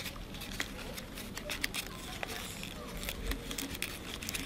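Stiff folded paper rustling and crinkling under the fingers as origami panels are pushed into their pockets and locked, with scattered small clicks and crackles.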